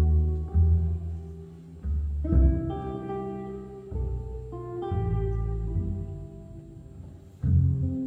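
Double bass and acoustic guitar playing a slow jazz piece: plucked bass notes under guitar chords that ring on between strikes.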